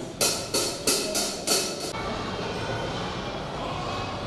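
Drum kit played with sticks: a quick run of about five cymbal and drum hits, each ringing briefly, stopping after about two seconds.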